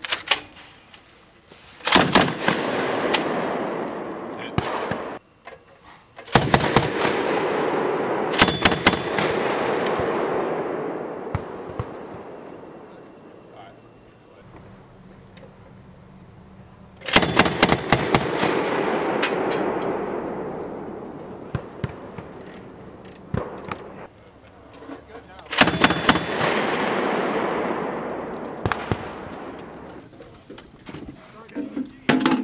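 Mk 19 40 mm belt-fed automatic grenade launcher firing five short bursts, each burst a quick run of sharp reports followed by a long rolling rumble that dies away over several seconds.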